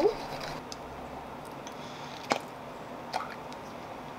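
Light handling sounds of a metal spoon and small plastic pots: a few soft clicks and taps, the sharpest a little over two seconds in, over faint steady room noise.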